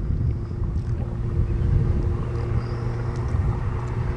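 A boat motor idles with a steady low hum over a continuous low rumble.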